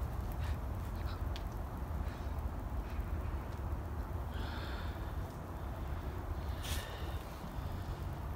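Outdoor ambience with a steady low rumble, and two short harsh bird calls, one a little past halfway and one near the end.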